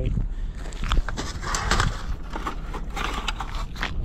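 Footsteps and the scraping, clicking handling of a black sheet-metal fan part as it is lifted out of a snowbank, with a sharp knock about a second in.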